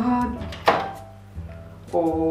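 A single sharp knock about two-thirds of a second in, as a small cosmetic item or its packaging is handled against a hard surface, over quiet background music.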